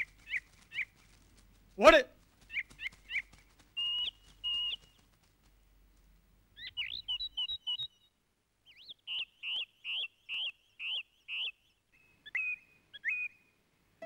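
Birds calling in short, high chirps, in bursts with pauses, and near the end in an even run of about two calls a second. About two seconds in, a child calls out once, loudly.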